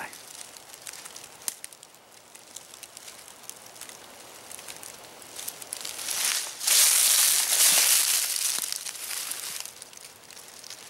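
Dry fallen leaves and twigs rustling and crackling underfoot: a few faint scattered crackles, then a louder stretch of crunching and rustling from about six seconds in, lasting about three seconds.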